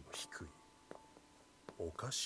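Faint, hushed speech: a short breathy whisper near the start, then a voice beginning again near the end, with a faint steady tone underneath.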